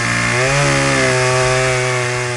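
Chainsaw running steadily at high speed while cutting through a dry log, its pitch shifting up slightly about half a second in.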